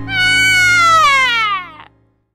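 A villain's evil laugh in an acted voice, drawn out into one long high cry that slides down in pitch, over steady background music. Both stop just before the end.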